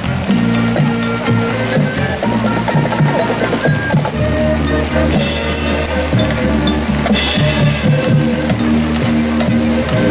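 Marching band playing a Motown groove: brass and mallet percussion over a bass line, with sustained low bass notes from about four seconds in.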